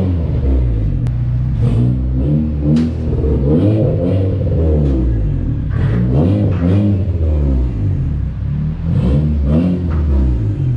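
Turbocharged K24 four-cylinder engine of a Honda Civic Si revving on a chassis dyno, its pitch rising and falling again and again, with a few sharp cracks.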